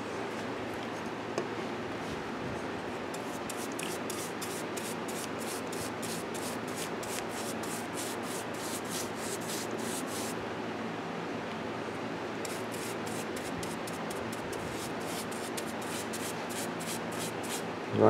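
Bristle paintbrush stroking varnish onto a carved wooden piece: quick repeated strokes, about three to four a second, that pause for a couple of seconds about ten seconds in.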